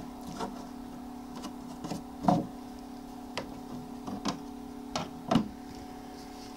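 Small egg incubator humming steadily while it runs, with a series of irregular light knocks and clicks as hands work inside its tray and lift out a plastic water dish.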